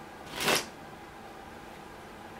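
Spanish playing cards being handled on a satin-covered table: one short papery rustle of the cards about half a second in.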